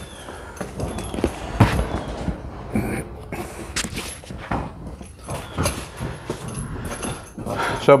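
Footsteps and handling noises: irregular knocks and rustles as a saddle pad is fetched and picked up.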